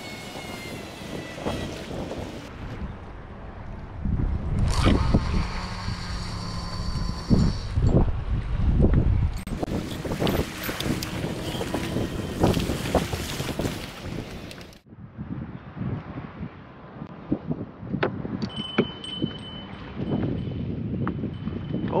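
Wind buffeting the microphone and rod-and-reel handling, then for the last few seconds the small bell clipped to a fishing rod's tip ringing steadily: the signal that a fish has taken the bait.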